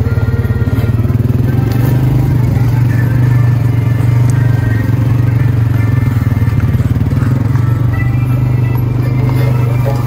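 ATV (four-wheeler) engine running at a steady low drone while the machine is ridden.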